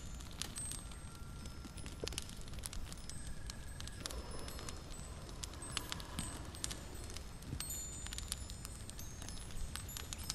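Layered ambience soundscape: a steady low rumble under scattered crackling clicks and brief, high, thin ringing tones that come and go.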